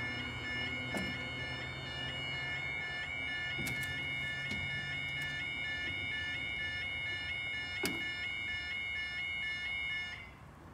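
Railway level crossing's flat tone alarm sounding a steady, repeating two-pitch warble while the barriers lower, with a few sharp clicks. It cuts off at the very end as the barriers come fully down.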